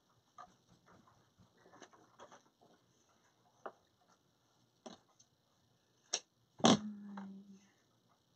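Sparse light clicks and taps from craft materials being handled, about seven across the stretch, the loudest about six and seven seconds in. A short, low, steady hum follows the last tap.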